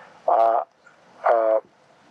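A man's voice amplified through a megaphone, giving two short drawn-out vowel sounds about a second apart, like hesitation sounds between sentences.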